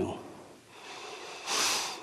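A man draws one short, sharp breath in through his nose about one and a half seconds in.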